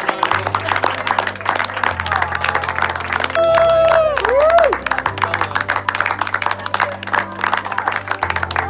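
Guests applauding with hand claps, with music playing underneath. A long cheering call rings out over the clapping about halfway through, wavering in pitch and louder than the rest.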